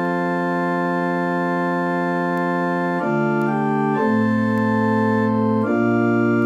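Church organ playing the psalm-tone chords for the sung psalm: one chord held for about three seconds, then a few quick chord changes.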